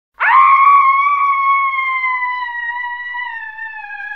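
A single long, high-pitched scream that starts suddenly and is held on one note, slowly sliding down in pitch and fading.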